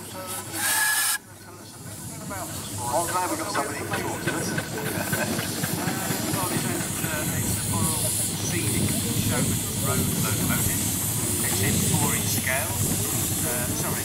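Miniature steam traction engines running: a loud burst of steam hiss in the first second that cuts off suddenly, then the steady, rapidly beating working sound of the engines as they drive past.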